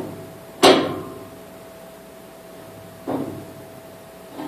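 A single sharp bang with a short echo about half a second in, then a softer knock near three seconds, over a steady faint hum.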